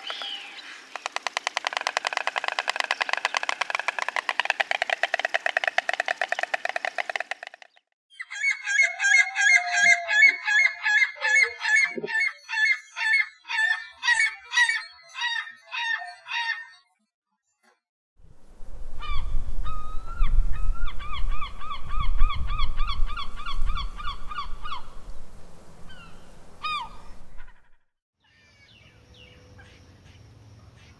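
A white stork clattering its bill in a fast, dry rattle for about seven seconds. Then a ring-billed gull gives a series of loud, regular calls. Near the end comes another run of quick bird calls over a low rumble of noise.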